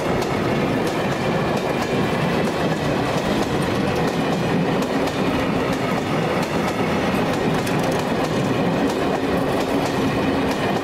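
Freight train of tank wagons rolling past close by: a steady rumble of wheels on rail, with irregular clicks and clacks as the wheels pass over the track.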